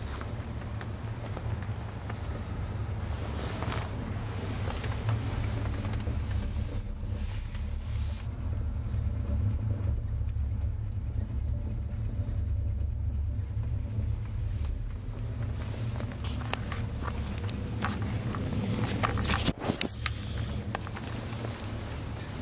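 Steady low rumble of a chairlift carriage riding along its cable, with a few clicks and a knock near the end.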